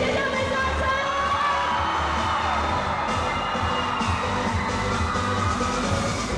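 Live pop song played through a concert PA, with sustained melody lines over a steady bass beat, and an audience cheering.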